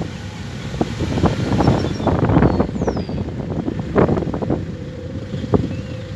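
A van driving slowly along a road, with wind buffeting the microphone and irregular knocks and bumps, loudest a couple of seconds in and again about four seconds in; it settles into a steadier engine hum near the end.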